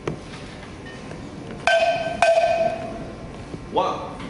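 Two sharp strikes on a ringing, bell-like metal percussion instrument, about half a second apart, each ringing on for about a second. A short shout follows near the end.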